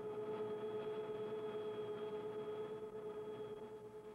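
Helicopter in flight heard as a steady, even-pitched whine over a faint hiss, with no audible rotor beat.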